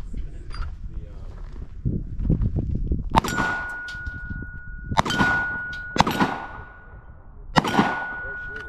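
Four gunshots, the first about three seconds in and the last near the end. Each is followed by a steel target ringing with one steady tone for a second or two, the sign of a hit on steel.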